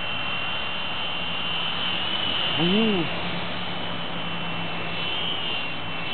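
Small electric RC toy helicopter, a UH-60 Black Hawk model, hovering: a steady high motor-and-rotor whine whose pitch wavers slightly twice. A short hummed voice comes about three seconds in.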